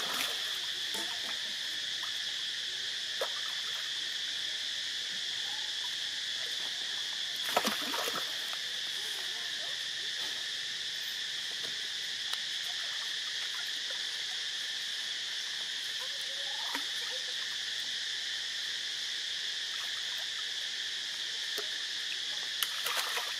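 Steady, high-pitched insect chorus. A brief splash of water about seven and a half seconds in is the loudest sound, with a few faint clicks around it.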